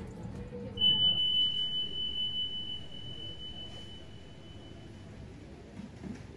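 A single high ringing tone, struck about a second in, then fading away over about four seconds.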